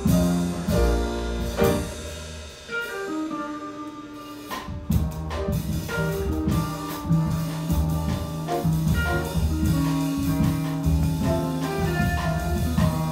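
Live jazz played by piano, upright bass and guitar, with a walking bass line under held notes; it thins out briefly about two seconds in, then picks up again.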